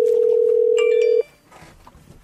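One steady telephone line tone heard over the call as it is put through to another extension; it stops about a second in, with a brief cluster of higher beeps just as it ends.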